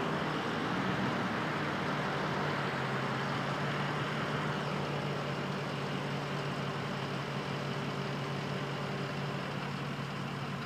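Steady background traffic noise with a low constant engine-like hum, unchanging throughout with no distinct events.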